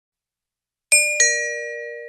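Two-note ding-dong chime: a higher note about a second in, then a lower note a quarter second later, both ringing out and fading. It works as a cue tone in an exam recording.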